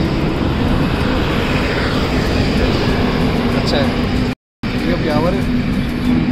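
Highway traffic running past, with wind buffeting the phone microphone into a steady low rumble and a low hum underneath. The sound cuts out for a moment a little over four seconds in.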